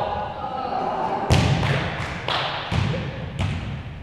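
A volleyball bounced on a hardwood gym floor about six times, roughly three bounces a second, each thud echoing around the large gym. A voice calls out briefly at the start.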